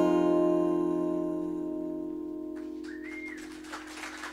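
The last strummed guitar chord of a song rings out and slowly fades. Some of the higher notes stop about two and a half seconds in.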